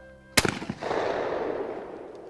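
A single shotgun shot at a flying clay target about a third of a second in, followed by its echo fading out over the next two seconds.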